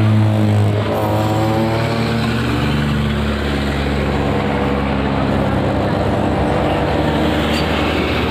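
Engines of road traffic passing close by: a motorcycle engine revs up, rising in pitch about a second in, over the steady running of heavier vehicle engines. Near the end a light box truck drives past.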